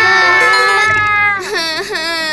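A cartoon baby character's voice wailing in one long, held cry that falls off about one and a half seconds in, followed by two short rising-and-falling cries.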